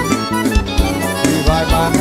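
Forró band music in an instrumental passage: an accordion melody over bass and a steady drum beat, with no singing.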